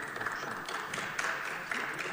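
Background noise of a large assembly chamber between speakers: a steady soft hiss with a few faint scattered taps.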